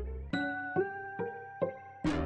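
Software-instrument melody playing back from the SPAWN plugin's 'Harsh Piano Chill' preset: keyboard-like notes struck about every half second over chords, its timbre being changed on the plugin's experimental pad. The low bass line drops out about a third of a second in, leaving the higher notes alone.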